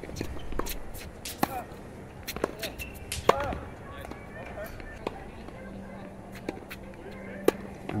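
Tennis balls being struck by racquets and bouncing on a hard court during a volley-and-overhead rally, sharp pops about once a second.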